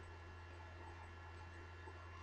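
Near silence: a faint, steady low electrical hum under the room tone.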